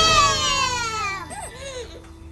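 A long, falling crying wail, followed by two short whimpers that fade out near the end.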